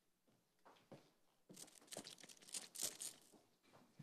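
Faint handling noise at a microphone: a few soft clicks, then about two seconds of rustling and crinkling before speech resumes.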